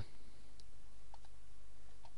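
A couple of faint computer mouse clicks, a little over half a second apart, over a steady low hum of room tone.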